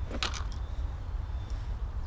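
Wind rumbling and buffeting on the microphone. A short, sharp sound comes about a quarter second in.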